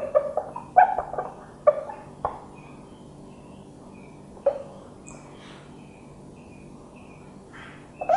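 Felt-tip marker squeaking across a whiteboard as words are written: a quick run of short squeaks in the first two seconds, one more a little past the middle, and a short stroke near the end.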